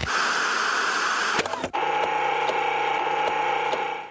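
Loud, steady static hiss like a radio signal. About two seconds in it changes to a hiss carrying a steady humming tone, and it cuts off suddenly at the end.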